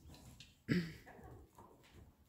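A horse cantering on a lunge line over soft arena footing, with one loud, short snort about two-thirds of a second in and faint hoof thuds around it.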